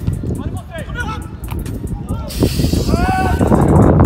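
Voices over background music, then a loud rush of noise in the last half second or so.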